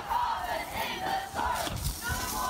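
Several people shouting at once, raised voices overlapping continuously.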